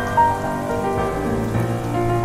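Rock song in an instrumental passage: held electric guitar notes over bass and drums, with no singing.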